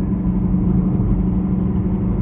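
Steady engine and road noise heard inside a car cruising on a highway: a low rumble with an even hum.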